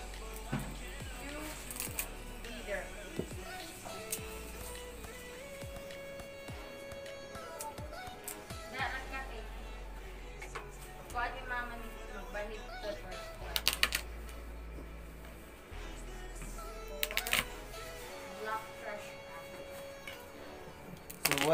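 Background music and voices in the room, with a few sharp knocks of a knife and hands on a plastic cutting board, the loudest cluster about two-thirds of the way through.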